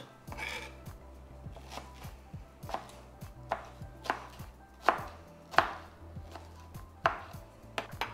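Kitchen knife dicing mango on a cutting board: the blade knocks on the board in separate, uneven strokes, a louder strike about every second with lighter taps between.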